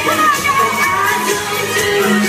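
Pop music played live through a stage sound system, with a woman's voice over a steady beat, heard from among the audience with crowd noise mixed in.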